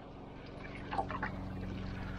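Low steady hum of an electric trolling motor running, switching on just before and holding steady, with a faint trickle of water and a few small splashes about a second in.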